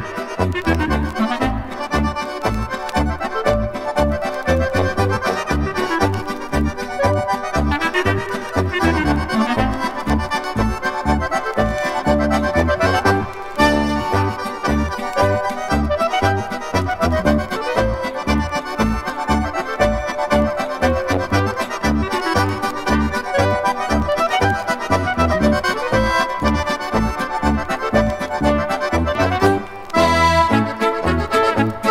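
Oberkrainer (Slovenian alpine folk) band music, with an accordion carrying the melody over a steady oom-pah bass beat.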